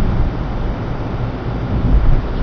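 Covert surveillance intercept recording dominated by a loud, steady low rumble and hiss, with the conversation muffled and buried under the noise.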